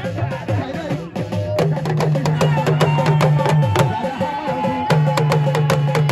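A Hausa drum ensemble plays rapid stick-beaten rhythms, led by kalangu hourglass talking drums. The strokes grow dense and driving about a second and a half in.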